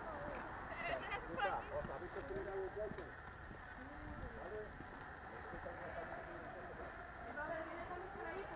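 Faint, distant voices and shouting, with no words clear, a little louder about a second and a half in.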